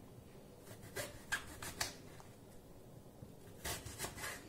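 Kitchen knife cutting through a piece of fruit onto a plastic cutting board: a few short, sharp knocks about a second in, then another near the end.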